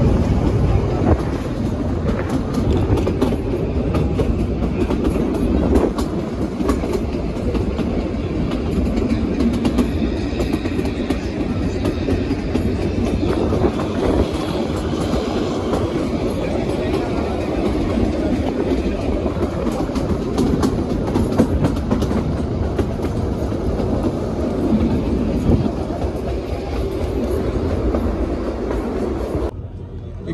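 Kalka–Shimla narrow-gauge toy train coaches rolling along the track, heard from an open window: a steady rumble with the rapid clicking and clacking of the wheels over the rails.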